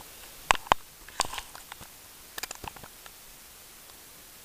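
Handling noise from a dirt-bike piston being turned over on a shop towel: a few light clicks and taps, two sharp ones about half a second in, another near a second in and a small cluster around two and a half seconds.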